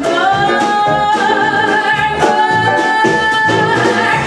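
A woman singing a long held note with vibrato into a microphone, over live band accompaniment with a steady beat.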